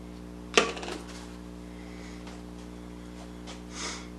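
One sharp knock about half a second in, over a steady low electrical hum, with a brief soft hiss near the end.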